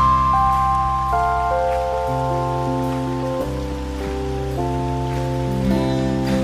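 Live band playing a slow instrumental passage: sustained keyboard chords over a held bass, the chord shifting every second or so, with a steady hiss of rain beneath the music.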